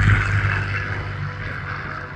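P-40 Warhawk's V-12 piston engine running on a low flypast, its sound fading steadily as the plane moves away.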